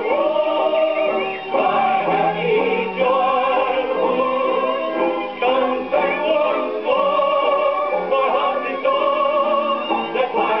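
Gramophone playing an Eclipse 78 rpm record of a music-hall medley: a vocal line with band accompaniment, in a thin, muffled old-recording sound with no highs.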